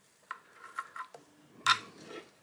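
Light scattered taps and scrapes of a wooden stick poking against a glass enclosure and cork bark, with one sharper tap near the end.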